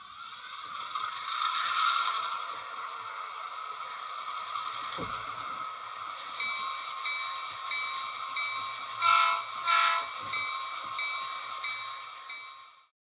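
Train sound effect: a passing train's steady rushing noise that swells over the first two seconds, with a bell-like ding repeating about one and a half times a second from about halfway, and two short horn blasts a little after that.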